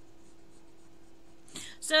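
Faint scratching of lines being drawn by hand on paper, the sound of sketching.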